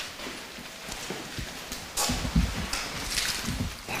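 A few footsteps on a hard floor in the second half, after a quiet stretch of room sound.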